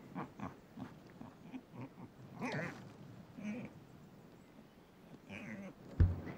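A wombat making a series of short, fairly quiet vocal sounds and snuffles, the loudest about halfway through.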